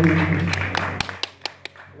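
A man's singing voice and acoustic guitar die away over the first second, then a handful of sharp, scattered claps sound in the near-quiet that follows.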